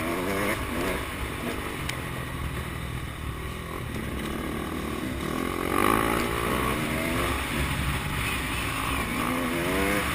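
Motocross dirt bike engine heard from a camera mounted on the bike, its pitch climbing and dropping as the throttle is opened and closed, with rises near the start, about six seconds in and near the end.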